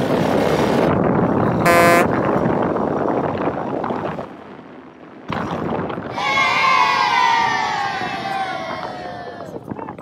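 ATV running as it is ridden, with rough wind and engine noise, a short steady tone just before two seconds in, and a long sound sliding down in pitch over the second half.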